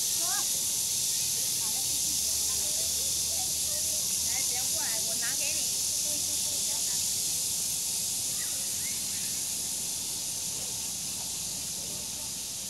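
A steady, high-pitched insect drone, most likely a cicada chorus in the trees, with scattered short bird chirps over it, a cluster around five seconds in and a couple more near nine seconds.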